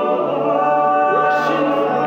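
All-male a cappella group singing: backing voices hold sustained chords over a low sung bass line, with a short upward vocal slide and a brief hiss near the middle.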